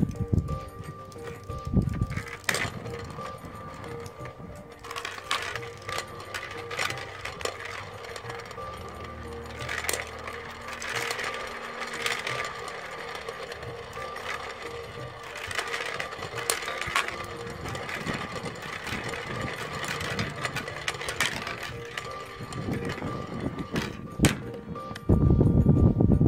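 LEGO balls clicking and rattling as they roll against a spinning top and the rim of a plastic dish on a concave mirror, in irregular scattered clicks over a steady tone.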